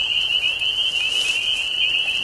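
A dense chorus of spring peepers: many frogs giving short, high, rising peeps that overlap into one continuous shrill ringing.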